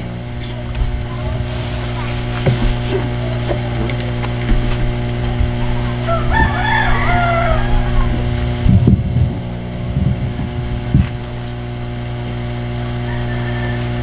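A rooster crowing once, about six seconds in, a single call lasting about a second and a half, over a steady low hum.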